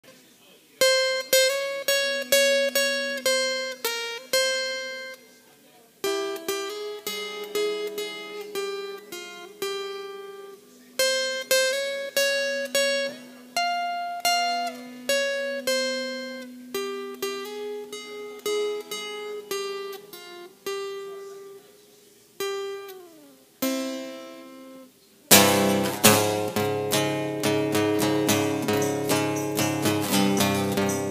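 Instrumental song intro on guitar: a melody of single plucked notes that ring and fade, in short phrases, with one note sliding downward. Near the end a fuller, louder backing with low bass notes comes in.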